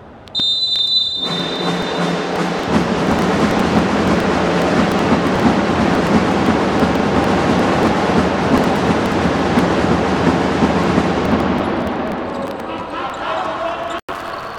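A referee's whistle blows once, briefly, a moment in, signalling the futsal kick-off. Loud crowd noise with scattered ball and court impacts follows, easing off near the end.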